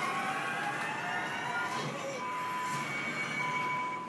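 Television audio playing in the room: a show's background music or sound effects made of long held electronic tones, with a clear steady higher note coming in about halfway through.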